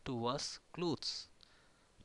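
A man speaking for about the first second, then a pause with no clear sound.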